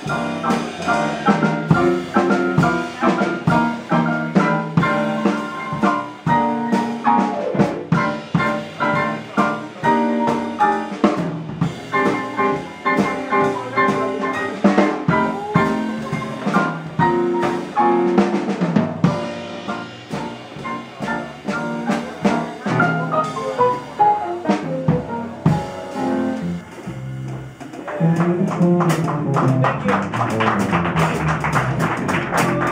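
Live jazz piano trio playing: grand piano with double bass and drum kit, with a couple of quick falling runs in the second half.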